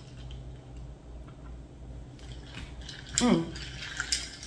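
Quiet kitchen with a steady low hum and a few faint ticks while a woman tastes iced coffee through a straw; about three seconds in comes her short appreciative "mm", falling in pitch.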